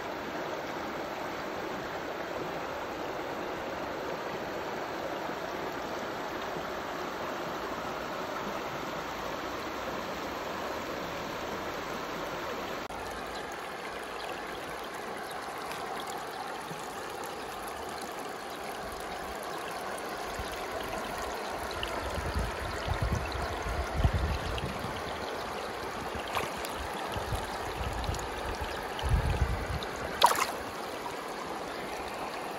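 Shallow mountain stream running steadily over rocks. In the last third come low, irregular thumps and bumps of handling close to the microphone as the net is moved at the water.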